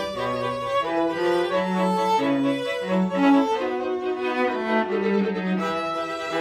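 String quartet of two violins, viola and cello playing a Christmas medley. A bowed melody moves from note to note about every half second over sustained lower parts.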